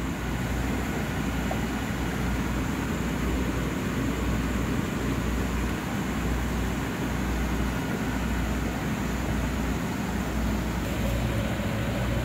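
Steady hum and hiss of a room of running aquarium tanks, with their pumps, filtration and air handling going, and a low rumble that wavers slightly.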